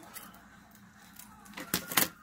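Scissors cutting tulle ribbon: faint light snipping, then two sharp clicks close together near the end.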